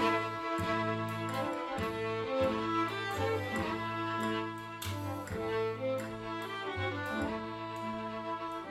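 Bowed string music: violins playing over a low bass line whose notes change about every three-quarters of a second.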